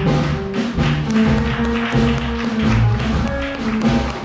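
Jazz trio playing live: a plucked upright double bass moving through low notes under a drum kit with cymbals.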